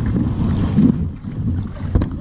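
Wind buffeting the camera microphone: an uneven low rumble that rises and falls, with a short knock near the end.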